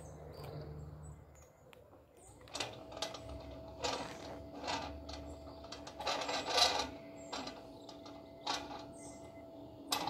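NexxTron solar slide gate motor running, starting about two and a half seconds in with a steady hum and repeated clicking and rattling as the gate rolls along its track, sliding closed. The rattling is loudest about two thirds of the way through.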